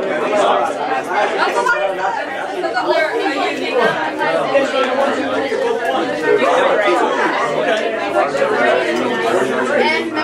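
Many overlapping voices of students talking with partners at once: steady classroom chatter in a large room.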